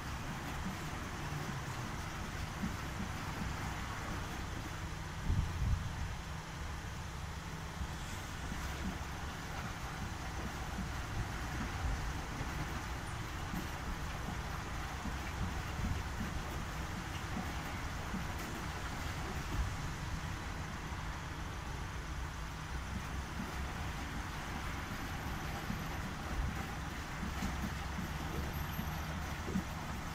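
Commercial front-loading washing machine on its wash cycle, the drum turning and tumbling the wet load with a steady low rumble. There is one louder bump about five seconds in.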